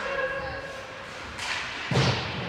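Sharp cracks of hockey sticks and puck on the ice, with a heavy thump near the end, over voices from the stands.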